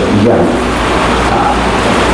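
A man speaking Mandarin in a lecture, briefly near the start and faintly again midway, over a loud, steady hiss and low hum that fill the recording.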